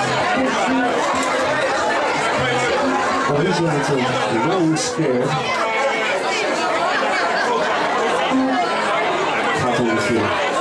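Loud crowd chatter close by, over a live rock band playing, its bass notes coming through underneath.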